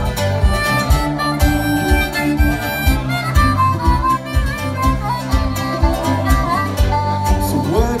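A live roots-blues band playing an instrumental passage: wailing, bending harmonica lead over electric guitar, electric bass and a drum kit keeping a steady beat of about two kick-drum strikes a second.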